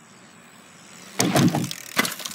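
Bicycle going over a jump ramp right beside the microphone: quiet tyre noise, then a short loud clatter and thump a little over a second in.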